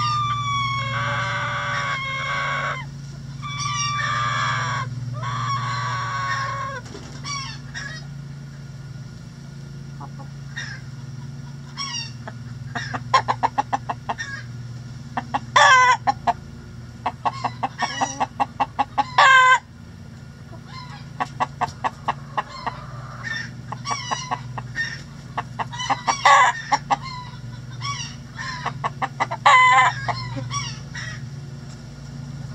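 A rooster crowing with long drawn-out pitched calls in the first seven seconds or so. From about twelve seconds on, chickens clucking in fast runs of short notes, some runs ending in a louder call. A steady low hum runs beneath.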